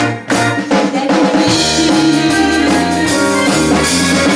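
Live pop band playing an instrumental passage: a brief break just after the start, then the drum kit and the band come straight back in with electric guitar, bass and keyboard.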